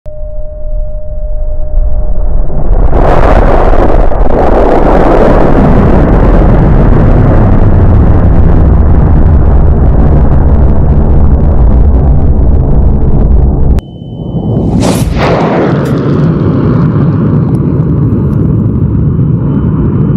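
R-class high-power rocket motor firing: the roar builds over the first three seconds into a loud, sustained noise. It drops out for an instant about fourteen seconds in and comes back with a sharp crack, then carries on steady.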